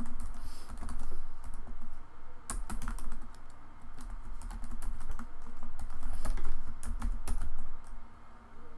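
Typing on a computer keyboard: irregular runs of keystrokes with brief pauses.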